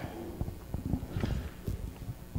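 Handling noise from a handheld microphone as it is lowered: a string of soft, irregular knocks and rubbing clicks.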